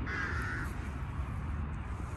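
A crow cawing once, a single harsh call of about half a second near the start, over a steady low rumble.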